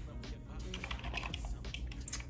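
A quick run of light, irregular clicks and taps from small objects handled close to the microphone, over faint background music.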